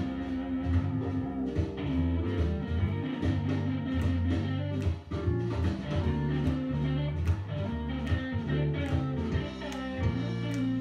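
Blues-rock band recording in an instrumental break: an electric lead guitar solo over bass and a steady drum beat.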